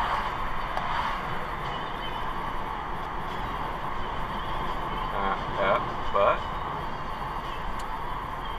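Steady road and engine noise of a moving car heard from inside, with a few short spoken sounds about five to six seconds in.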